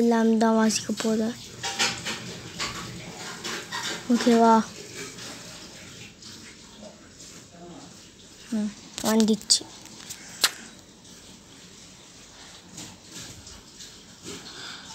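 A person's voice in a few short held vowel sounds, about a second in, around four seconds and around nine seconds, with scattered light clicks and taps between them.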